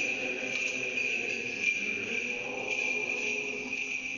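Small bells on a swinging Orthodox censer jingling steadily, with a fresh shake of the bells about once a second as it swings.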